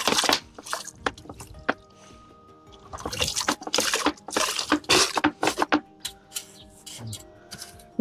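Hand trowel scooping and tipping potting mix into plastic pots. Brief scraping, pouring rushes come at the start and again in a denser run from about three to six seconds in, over quiet background music.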